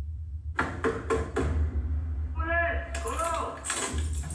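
Film soundtrack: four sharp knocks on a door in quick succession over a low, steady drone, followed by brief voice sounds.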